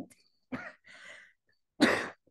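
A woman clearing her throat, then coughing once sharply near the end.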